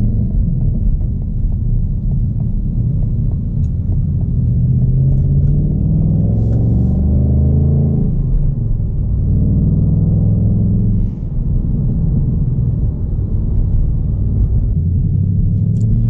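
Ford Mustang Bullitt's 5.0-litre V8 heard from inside the cabin while driving. The engine note rises, falls back at a gearshift about eight seconds in, rises again and dips at another shift about eleven seconds in, then runs more steadily.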